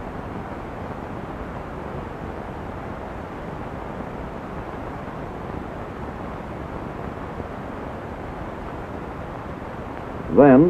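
Steady, even background noise with no distinct sounds in it.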